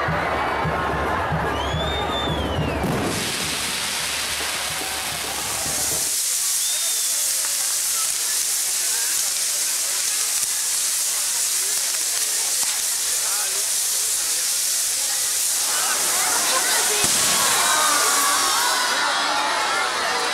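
Castillo fireworks tower burning: a steady hiss of spark fountains and spinning pyrotechnic wheels, with crowd voices near the start.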